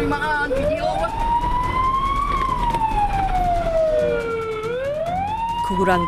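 Fire engine siren wailing, its pitch sliding slowly up and down: it rises about half a second in, peaks around two seconds, falls, and climbs again near the end, heard from on board the truck.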